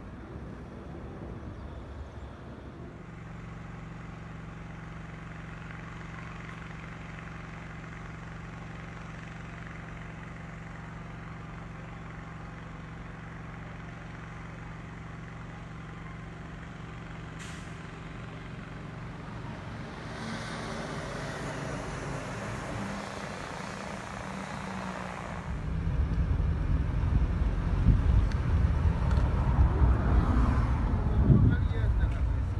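Large truck engine idling steadily, a low hum with an even, unchanging pitch. About 25 s in, a much louder low rumble takes over.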